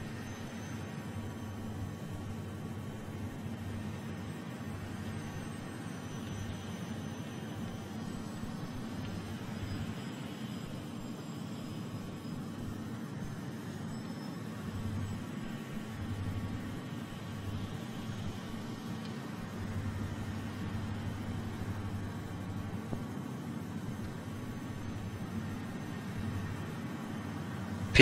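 Steady low rumble with a hiss: ambient sound from the launch pad as the Electron rocket stands fuelled during its countdown, swelling slightly a few times.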